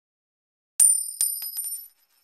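High metallic ringing sound effect on an intro title card: about five sharp strikes begin a little under a second in, each ringing at a few high pitches, coming quicker and fainter until they fade out.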